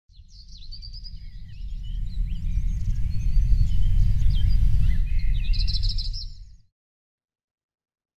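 Birds chirping and singing over a low rumble that swells louder, all cutting off abruptly about six and a half seconds in.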